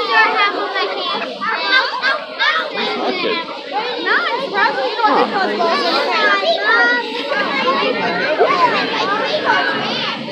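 A crowd of young children chattering and calling out over one another, many high voices at once without a break.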